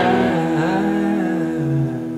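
Blues music: a sustained chord with one note bending up in pitch and back down.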